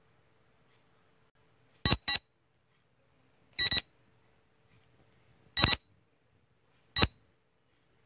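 Quiz countdown-timer sound effect: short, bright electronic beeps like an alarm clock, sounding about every one and a half to two seconds from about two seconds in, the first few as quick double beeps.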